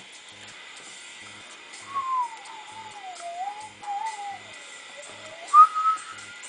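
A person whistling a meandering tune: a single clear note sliding up and down, starting about two seconds in, breaking off briefly, then returning with a louder, higher held note near the end.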